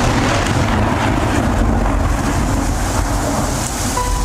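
Storm sound effect: a steady rushing noise of wind and rain.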